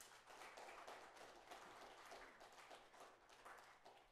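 Faint audience applause: many hands clapping at once in a dense patter that builds at the start and dies away just after the end.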